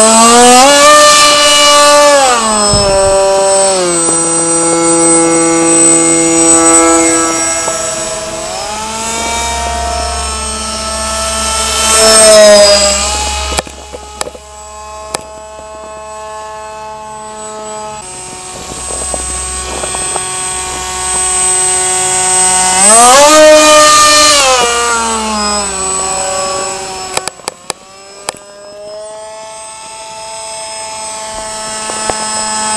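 Electric motor of a foam radio-controlled model Alpha Jet whining as it flies past. Its pitch rises and falls with throttle and passes, loudest about a second in, at about twelve seconds and again around twenty-three seconds, with a quieter stretch between.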